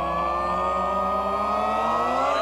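A man holding one long sung note that slowly rises in pitch, over backing music.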